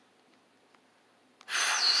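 Near silence, then about one and a half seconds in a sudden loud breathy hiss with a high whistling tone that wavers in pitch.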